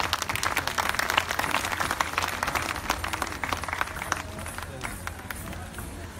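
Audience clapping, dense at first, then thinning out and dying away about four to five seconds in.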